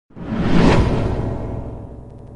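Logo-intro whoosh sound effect that swells up within the first half second and then slowly fades away, over a low sustained musical tone.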